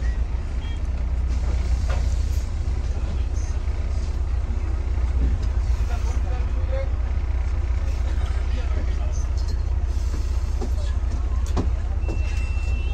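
Steady low rumble of a moving double-decker bus, heard from inside on the upper deck, with a couple of light knocks or rattles. Voices murmur in the background.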